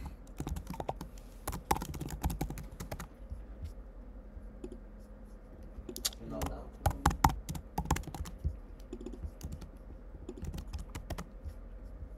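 Typing on a computer keyboard: irregular runs of key clicks, thinning out in the middle before picking up again.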